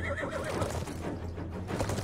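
Horses galloping, with a horse's whinny wavering and dropping in pitch, dying away in the first half-second. A film score runs underneath.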